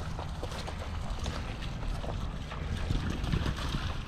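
Wind buffeting the microphone in a steady low rumble, with soft scattered footsteps on wet, soggy grass.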